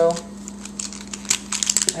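Plastic pieces of a DaYan LingYun 3x3 speed cube clicking against each other as the cube is handled and pulled apart. A quick run of sharp clicks comes in the second half.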